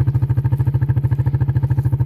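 Four-wheeler (ATV) engine idling steadily, an even chugging of about a dozen beats a second.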